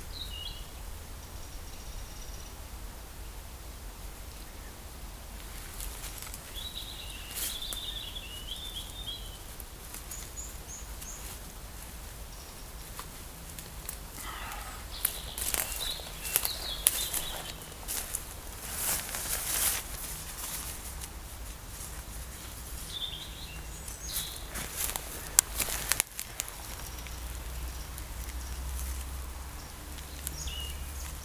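Footsteps and rustling on a mossy forest floor, with crackling clicks in two busy spells, one in the second half and a shorter one near the end. Small birds chirp now and then throughout.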